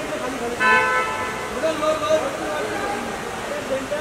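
Several voices calling out over one another, with a short steady high tone about half a second in, lasting about half a second.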